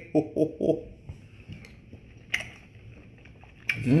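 A man taking a spoonful of cabbage soup and chewing it: a few short vocal sounds at the start, then soft chewing and mouth clicks, and an appreciative 'mmm' that falls in pitch near the end.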